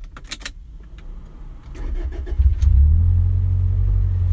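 Toyota Celica 1.8-litre four-cylinder engine started from inside the cabin: a few clicks at the key, a short crank, then it catches about two and a half seconds in with a brief rev flare. It settles into a steady, low idle through its aftermarket exhaust.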